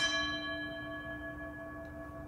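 A bell struck once, then ringing on with several clear tones that fade slowly. It is the elevation bell marking the consecration of the bread in the Eucharist.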